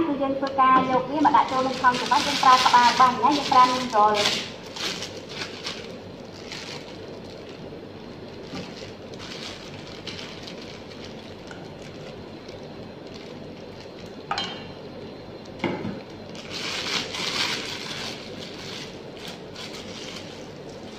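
A voice talking for the first few seconds, then soft handling noises: a spatula scraping a stainless steel mixing bowl and a plastic piping bag crinkling as it is filled and twisted, with a few sharp clicks and a longer rustle near the end.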